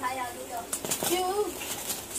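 Indistinct voices talking, with a few short clicks.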